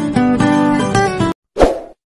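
Guitar background music that cuts off abruptly just over a second in, followed near the end by one short sound effect as a subscribe-button animation comes on.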